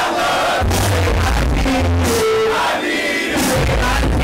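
Live hip-hop concert music played loud through a club sound system: a heavy bass beat pulsing steadily under a vocal line, with crowd noise.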